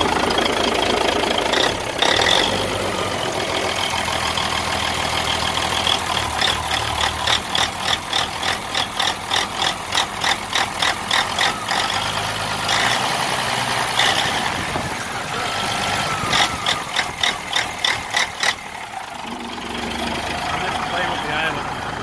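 Caterpillar 3406B inline-six diesel in a 1995 Freightliner FLD120 idling, close up in the engine bay. A sharp rhythmic ticking, about two to three a second, comes and goes in two stretches over the steady drone. The engine is called bad.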